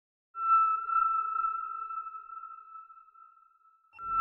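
A single steady, high electronic tone, like a sonar ping, starts sharply and slowly fades away over about three seconds.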